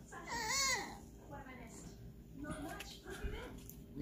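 A brief, high, wavering cry that rises and falls in pitch, in the first second. Otherwise only faint low sound.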